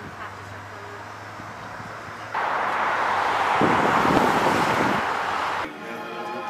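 Outdoor traffic noise: a loud rush of a vehicle going by, starting suddenly about two and a half seconds in, swelling to a peak and cutting off just before the end, over a quieter steady background before it.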